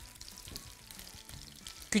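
Faint, steady sizzling of kadayıf-wrapped shrimp frying in sunflower oil in a pan.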